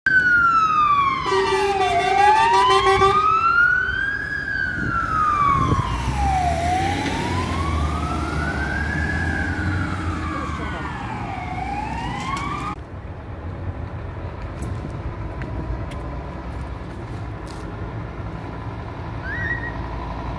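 Electronic siren of a Scania P360 fire engine on an emergency run, a slow wail rising and falling about every four and a half seconds. A horn sounds for about two seconds early in the wail, and the siren cuts off suddenly about two-thirds of the way through, leaving street traffic.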